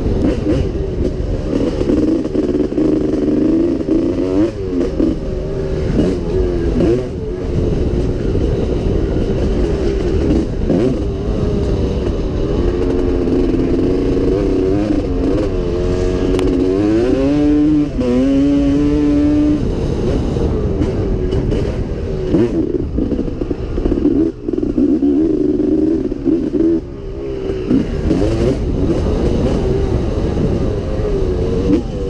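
Pre-1990 Yamaha YZ250 two-stroke motocross bike ridden hard on a dirt track, heard from the rider's point of view. The engine pitch keeps rising and falling with throttle and gear changes, with a few brief drops where the throttle is shut off.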